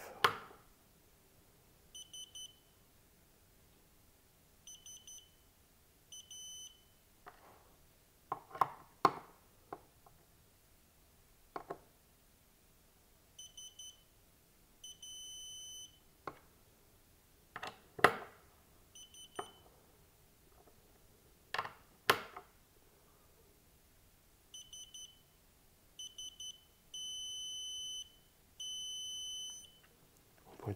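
Digital torque screwdriver beeping as it is turned on the CPU socket's retention screws: short runs of rapid high beeps, with a steady tone held about a second near the middle and twice near the end. Sharp clicks and knocks come from the tool and the screws in between.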